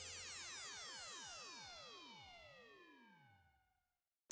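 A faint sweeping sound effect at the end of the background music: many pitches gliding downward together and fading out over about three seconds.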